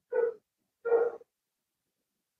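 Two short, high-pitched animal calls, each under half a second, the second about two-thirds of a second after the first. They are quieter than the speech around them.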